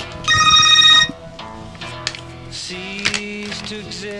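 A phone ringing with its ringer on: one electronic ring of about a second near the start, a pattern of steady high tones, followed by quieter background music.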